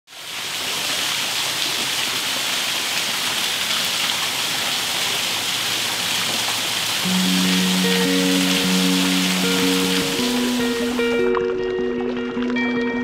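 Steady splashing of water falling in a fountain. About seven seconds in, music enters with long held low notes, and the water sound stops abruptly just before the end.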